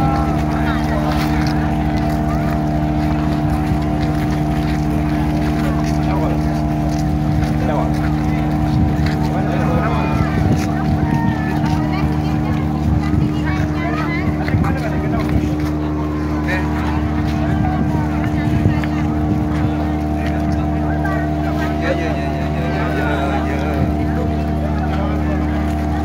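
Docked passenger ship's machinery running with a steady hum made of several fixed tones. Over it, a crowd of disembarking passengers chatters.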